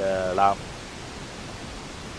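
A man's voice speaking for about half a second, then a pause in which only a steady background hiss remains.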